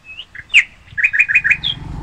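A songbird calling in short, high chirps: one loud slurred note about half a second in, then a quick run of about five chirps.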